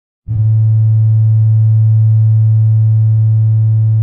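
One low synthesizer note that starts abruptly and is held steadily, buzzy and rich in overtones, as an intro music tone.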